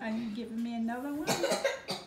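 A person's voice holding one steady note for about a second, then coughing briefly.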